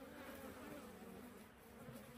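Faint buzzing of honeybees flying at a wooden hive's entrance, a low hum that wavers a little: busy foraging traffic in and out of the hive.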